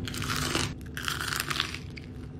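Crunching as a crispy potato waffle is bitten and chewed, in two crackly bursts about a second apart.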